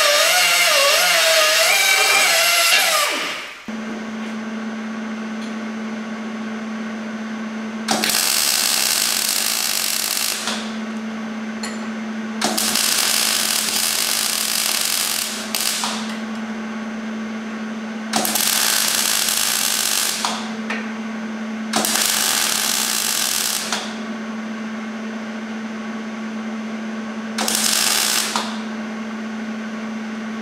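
A hand grinder cutting steel, its pitch wavering under load, stops after about three and a half seconds. Then a MIG welder lays short welds on a steel stake: five bursts of hiss of one to three seconds each, over a steady low hum.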